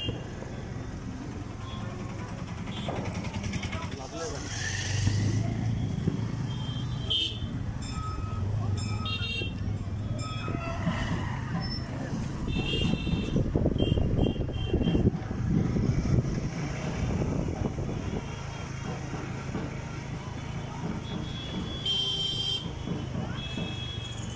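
Busy street traffic heard from a moving scooter: a steady low engine hum with road noise, and several short vehicle horn toots about 7, 9, 13 and 22 seconds in.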